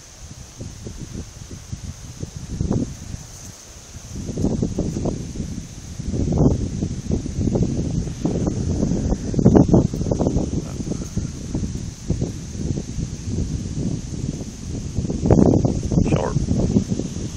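Irregular low rustling and buffeting on a handheld phone's microphone, rougher and louder from about four seconds in.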